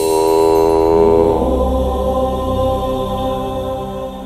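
Devotional chanting in intro music: a long, held chanted tone over a low drone, giving way about a second and a half in to a lower, quieter chanted line.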